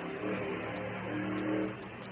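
A car engine running with a steady low hum, swelling slightly just before the end.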